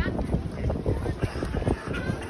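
Wind rumbling on the microphone over the indistinct chatter of a crowd.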